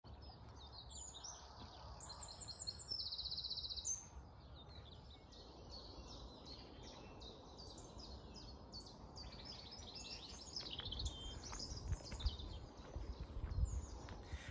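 Dawn chorus of songbirds: several birds chirping and singing, with one fast, high trill a few seconds in. A faint low rumble sits underneath, a little stronger near the end.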